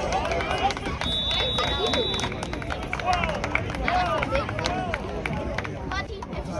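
Many voices of football players and onlookers shouting and talking over one another. About a second in, a single steady whistle blast lasts about a second, blown after a tackle.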